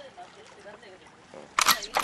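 Faint talk, then near the end a loud two-part camera-shutter click, an edited-in sound effect at a scene change.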